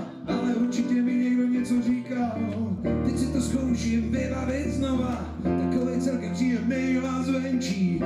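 Live band playing a song on bass guitar, keyboards and drums, with a male voice singing; long low bass notes come in about two seconds in and hold under the rest.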